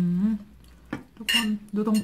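A metal fork clinking and scraping on a plate as it flakes fried fish off the bones. There is a sharp click about a second in, then a short bright scrape with a slight ring. A brief hum from a voice comes at the start.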